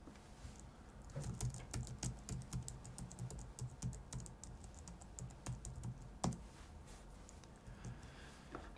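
Faint typing on a computer keyboard: quick, irregular key clicks, with one louder click a little after six seconds.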